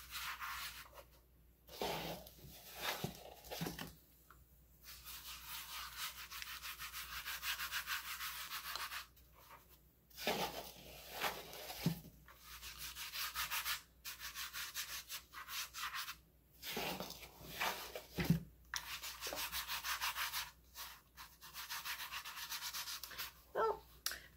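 Hands rubbing over a plastic pumpkin coated in gritty baking-soda paint paste and loose baking soda: a dry, rasping rub in stretches of a few seconds, broken by short pauses, with a few light handling knocks.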